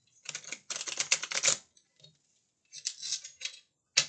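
A deck of cards being shuffled by hand: two bursts of rapid crisp card clicks, one about a second and a half long near the start and a shorter one past the middle, with another beginning at the very end.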